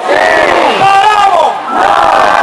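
Concert crowd shouting and cheering, with several loud nearby voices standing out above it.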